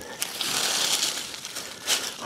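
Dry leaf mulch rustling and crackling as it is handled, with a light click near the end.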